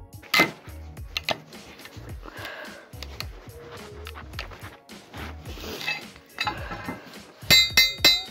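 Metal tool clinking and knocking against a steel wheel rim and the tire's bead wire as the old tire is pried off, with one loud ringing metallic strike near the end. Background music plays underneath.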